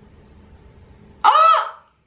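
A man's brief, high-pitched squeal of delight, rising and falling in one arc, about a second in after low room tone.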